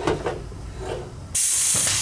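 Compressed air hissing loudly into a dented two-stroke expansion chamber as it is pressurised to about 40 psi, starting suddenly about a second and a half in after a few light handling knocks.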